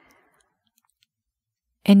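Near silence, broken by a faint click at the start and another about a second in; a woman's voice starts speaking near the end.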